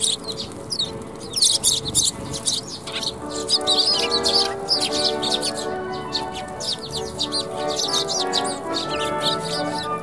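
Young Eurasian tree sparrows chirping repeatedly in quick, short calls over background music with held notes.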